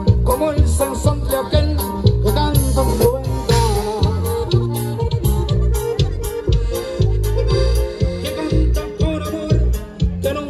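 Live norteño band music played loud, with accordion over a steady beat of bass and percussion.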